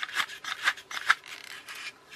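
Plastic hull parts of a disassembled TOMY clockwork toy boat rubbing and scraping together as they are handled, a string of short scratchy rubs.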